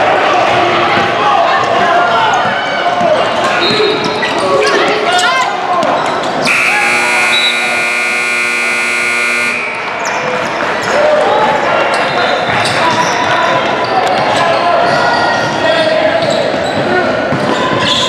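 Basketballs bouncing on a hardwood gym floor amid echoing voices, with an electronic scoreboard buzzer sounding one steady tone for about three seconds, starting about six and a half seconds in.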